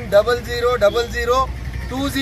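Speech: a man talking in Telugu, over a steady low rumble.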